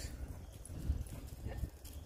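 Footsteps and handling of a handheld phone camera while walking: a low steady rumble with a few soft, irregular knocks.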